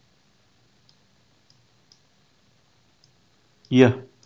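A few faint, irregularly spaced computer mouse clicks.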